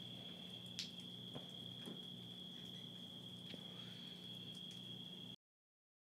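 Faint night insect chorus, a steady high-pitched trill, over a low steady hum with a few faint clicks. It cuts off suddenly to silence about five seconds in.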